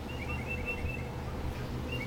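A bird chirping: a quick run of about six short, high chirps in the first second, over a steady low hum.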